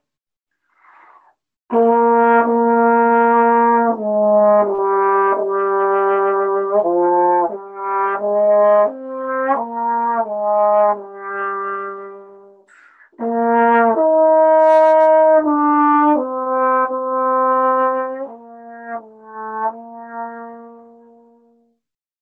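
Trombone playing a slow, smooth, connected melody in two phrases, with a short break for breath between them; a faint breath in comes just before the first note. The notes run into one another on steady air, a legato style, and the last note fades out near the end.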